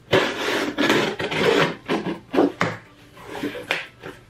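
Box cutter blade slicing through packing tape and cardboard on a shipping box: a long rasping cut followed by several shorter strokes.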